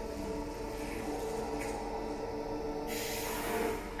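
Nature-documentary soundtrack played over room speakers: a sustained music chord, held steady. A high hiss of jungle ambience rises about three seconds in.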